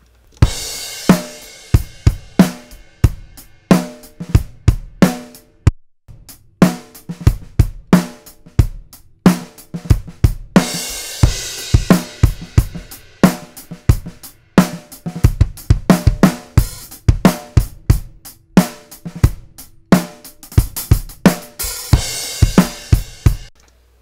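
Playback of a multi-miked acoustic drum kit recording, with the hi-hat taken by a Shure SM7. Kick, snare and hi-hat play a steady groove, with crash cymbal washes near the start, about halfway through and near the end, and a short break just before the six-second mark.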